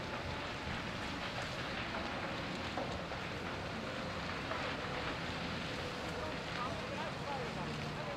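Steady rushing noise of a large building fire burning, mixed with wind on the microphone, with faint voices in the background.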